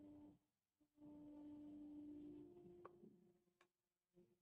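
Near silence: room tone with a faint steady hum that drops out briefly near the start and then returns, and two faint clicks near the end.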